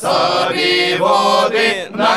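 A Cossack folk vocal ensemble, men's voices with one woman's, singing a marching song together without instruments, with a brief break between phrases near the end.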